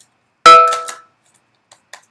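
A single sharp metallic clang about half a second in, ringing briefly with a few clear tones before dying away.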